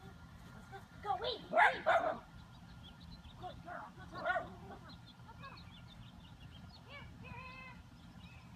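A small dog barking in short bursts, with a cluster of barks about a second in and more around four seconds in.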